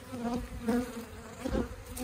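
Honeybees buzzing in flight around the hives: a steady hum of many bees, with single bees buzzing past close by now and then.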